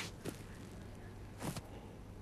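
Quiet indoor bowls-green ambience: a faint low steady hum and background noise, with one brief short sound about one and a half seconds in.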